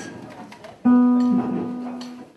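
Classical guitar: a single chord plucked about a second in, left ringing and slowly fading.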